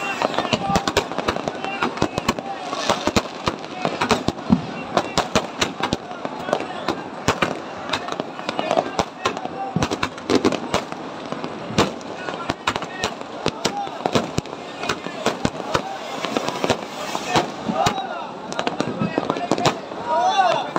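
Fireworks and firecrackers bursting in rapid, irregular succession, with many sharp cracks and pops, some close together, over a continuous crackling din.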